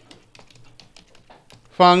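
Computer keyboard being typed on: a quick run of separate keystrokes as a word is entered.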